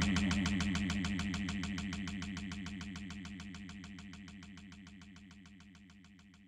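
The fading tail of a Brazilian funk track: a fast, buzzy pulsing loop that dies away steadily, gone about three-quarters of the way through.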